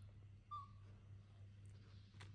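Near silence: a steady low room hum, broken about half a second in by one short, high, slightly falling squeak.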